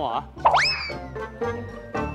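A cartoon-style 'boing' sound effect about half a second in, its pitch swooping quickly up and then sagging slowly, over light background music.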